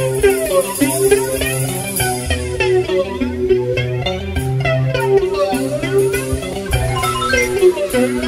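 Pagode baiano band playing live: a stretch with no singing or MC calls, quick pitched note runs over a steady bass line and percussion.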